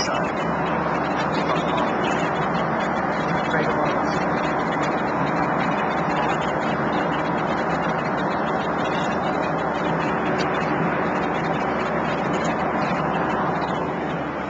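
Steady cabin noise of a jet airliner in cruise flight: an even, unbroken rush of engine and airflow noise.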